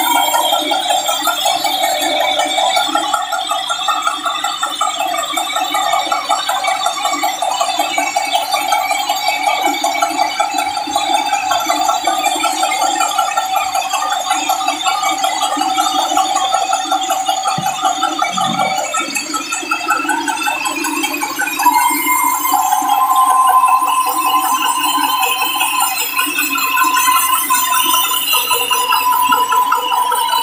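Band sawmill running with its blade cutting through a large log: a steady, wavering machine whine with rattle. About 20 seconds in, the whine shifts higher in pitch.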